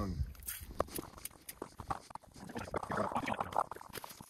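Scattered, irregular small clicks and knocks from hands and ice-fishing gear being handled at an ice hole while a hooked fish is being reeled in, with faint low voices near the end.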